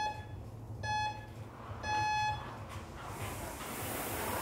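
Gym interval timer beeping a countdown, about one beep a second, the last beep held longer as the start signal. Near the end a rowing machine's fan flywheel starts to whoosh as the rowing begins.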